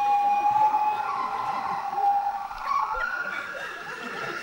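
A person's voice imitating a dolphin: one long, high, wavering squeal held on a single note that sags slightly, then slides up higher about three seconds in.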